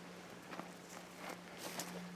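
Faint footsteps on a dry forest floor of pine needles and dirt: a few soft, irregular scuffs and crackles.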